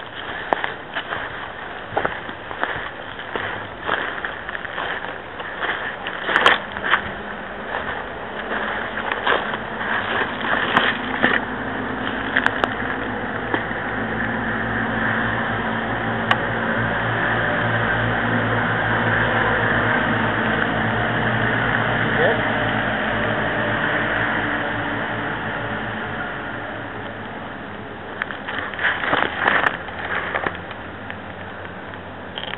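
Footsteps crunching through dry grass and pine litter, with a few sharp clicks, then a steady rushing noise that swells and fades through the middle, and more crunching near the end.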